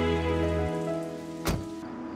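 Heavy rain falling steadily, under held background-music chords and a low drone that fade out within the first second. A single sharp thud about one and a half seconds in.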